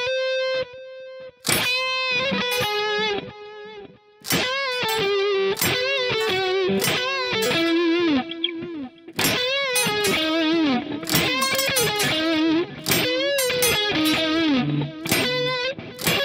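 Electric guitar (a Schecter Strat-style) playing single-note lead phrases with string bends and vibrato, in short runs with brief pauses between them: a melody being picked out by ear.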